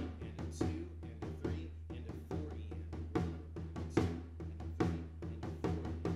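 Acoustic drum kit played at a slowed tempo: a two-handed tom groove counted "one and a two and a three and a four e and a", over a bass drum on every quarter note (four on the floor). The strokes come at several a second, evenly spaced, over a steady low drum ring.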